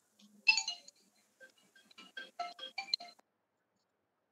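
Phone ringtone: a short electronic tune of quick pitched notes, loudest at its start, that cuts off after about three seconds.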